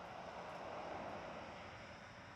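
Faint, steady background hiss with no distinct events.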